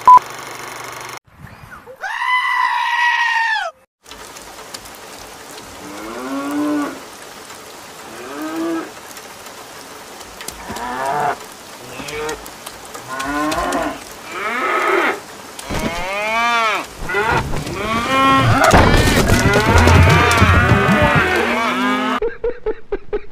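Farm animals bleating: single calls every second or two, then many overlapping calls in the last few seconds. About two seconds in there is a held, pitched tone that falls at its end.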